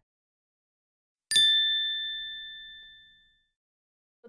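A single bright ding, a bell-like chime sound effect, about a second in, ringing out and fading away over about two seconds.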